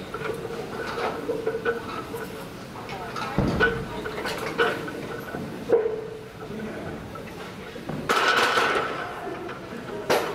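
Loaded barbell knocking and clanking during a heavy bench press set, with several sharp knocks about a second apart. Near the end of the set comes a louder noisy burst of about a second.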